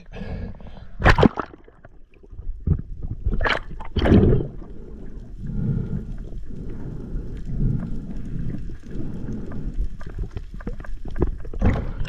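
Water sloshing and splashing, with a few sharp splashes in the first four seconds, then a low wash of water swelling and fading.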